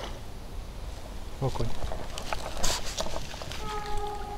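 A small hooked perch being brought to the bank on a spinning rod: a run of clicks and a short splash-like hiss about two-thirds of the way in, over a low rumble on the microphone.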